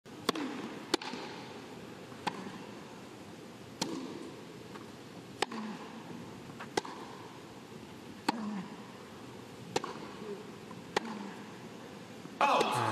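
Tennis rally on a grass court: a serve followed by racket strikes on the ball, about nine sharp hits spaced roughly one and a half seconds apart, over a low, steady crowd hush.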